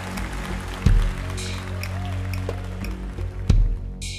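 Live rock band intro: sustained low chords with two heavy drum hits, one about a second in and one near the end.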